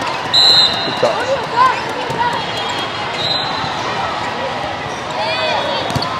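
Indoor volleyball rally sounds in a large, echoing hall: short sharp ball contacts and brief sneaker squeaks on the sport court, over a steady murmur from the crowded hall.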